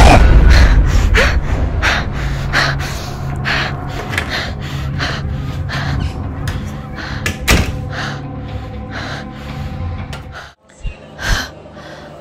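A heavy low jump-scare hit at the start, fading over a steady low music drone, with a person's quick gasping breaths running through it. Near the end everything cuts out abruptly for a moment before a few short sounds.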